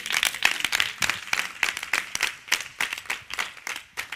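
People clapping their hands: a dense, uneven run of sharp claps, as in applause.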